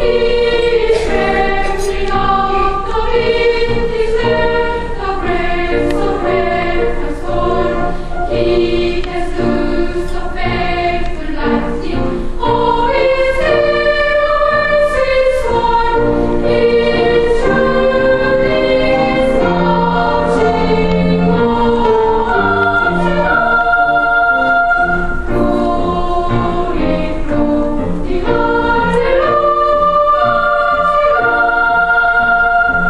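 Children's choir of boys and girls singing in several parts, holding and moving between sustained notes without a break.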